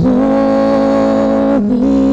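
Live worship song through a microphone: singers hold one long note for about a second and a half, then move on to the next note, with acoustic guitar accompaniment.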